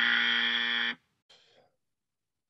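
Game-show style wrong-answer buzzer sound effect: one steady, loud buzz lasting about a second that cuts off sharply, marking a missed answer.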